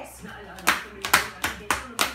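About five sharp hand claps in quick, uneven succession.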